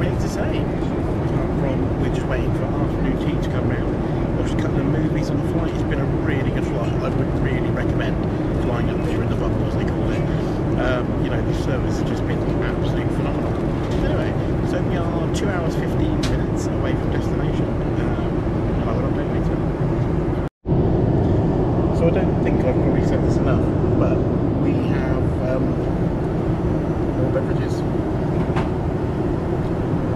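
Steady, loud cabin noise of a Boeing 747 airliner in cruise, heard from the upper deck: engine and airflow noise, with a man's voice half-buried in it. The sound cuts out completely for an instant about twenty seconds in.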